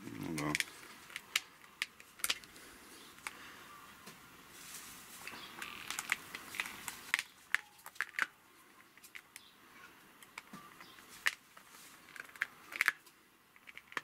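Metal toothed wire-embedding comb drawn along a hive frame's wires over a beeswax foundation sheet, pressing the wire into the wax: scattered sharp clicks with faint scraping, a few louder clicks near the end.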